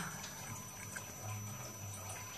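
Quiet room tone with a faint low hum, and no distinct sound event.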